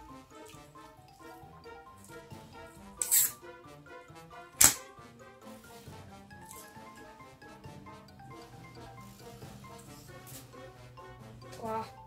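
Background music, with a short hiss about three seconds in and a loud sharp snap a second and a half later, fitting a can of sparkling drink being opened.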